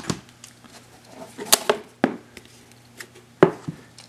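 A few sharp knocks and clicks at irregular intervals as small hard card boxes are handled, the loudest near the end.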